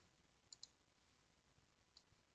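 Near silence, with a faint computer mouse click, two quick ticks close together, about half a second in.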